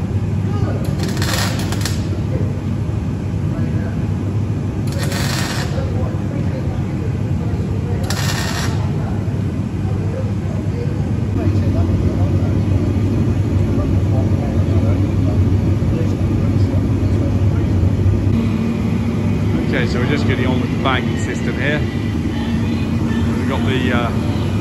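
Steady low machine hum, with three short crackling bursts of arc welding in the first nine seconds as a nut is tacked in place with small welds. A few light clicks near the end.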